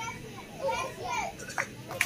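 Children's voices, brief bits of speech and chatter at moderate level, with a couple of sharp claps near the end.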